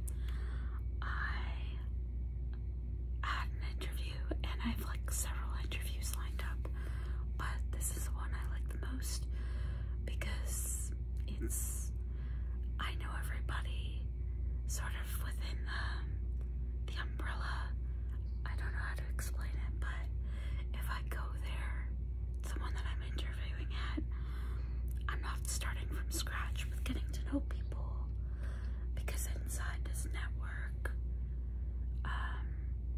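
A woman whispering close to the microphone in a continuous ramble, over a steady low hum.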